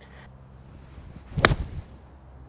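A 58-degree wedge striking a golf ball off fairway turf: one sharp, clean strike about one and a half seconds in, a good strike on a smooth 85-yard wedge shot.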